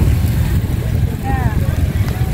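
Steady low rumble of wind buffeting the microphone, with street noise under it and a short voice heard briefly near the middle.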